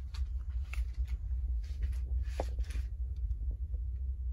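A baby bottle of milk is set down on a blanket-covered wicker basket: a few soft clicks and light rustling, the largest just past the middle, over a steady low hum.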